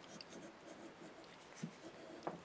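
Faint rubbing and scraping of a metal lathe tailstock body being worked by hand onto a tight-fitting wooden mandrel, with small clicks and a light knock near the end.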